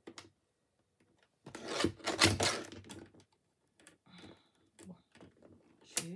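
Paper and small craft tools handled on a cutting mat: a loud rustling scrape lasting under two seconds, then a few light clicks and taps.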